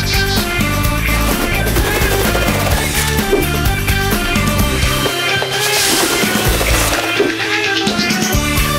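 Opening theme music of a TV series, playing steadily through the title sequence.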